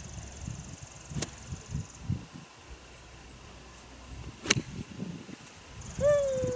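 Golf iron striking a ball on a driving range: a single sharp click about four and a half seconds in, with a fainter click about a second in. A faint steady high buzz runs through the first two seconds.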